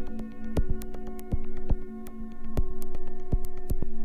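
Glitchy electronic dance music (IDM): a sustained low synth drone with steady higher tones over it, broken by many sharp, irregularly spaced clicks.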